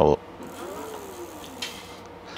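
Faint electric whine from the Engwe L20 2.0 e-bike's hub motor as the throttle is pressed. It rises briefly in pitch, then falls slowly as the motor spins down.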